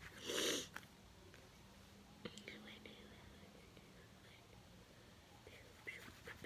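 Soft whispering, with a short, louder breathy burst about half a second in and faint whispered syllables later.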